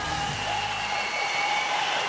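Studio audience applauding, with a few sustained music tones underneath.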